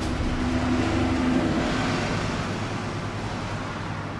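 A steady low hum with a general rumbling noise, and a brief whirring tone in the first second or two that fades out. No music is playing yet.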